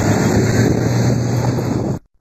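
Engines of armed pickup trucks driving past in a convoy: a steady drone with wind rushing on the microphone, cutting off suddenly at the end.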